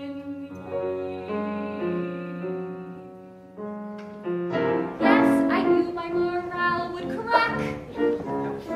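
Grand piano playing sustained chords, then a soprano voice comes in about halfway through, singing with vibrato over the piano accompaniment.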